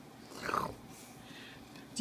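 A single short, faint vocal sound about half a second in, falling in pitch like a grunt, against a quiet room.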